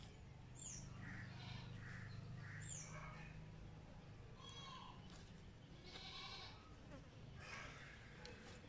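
Faint outdoor animal sounds: a bird's high chirp, falling in pitch, repeats a couple of times, with other soft calls and a low hum underneath.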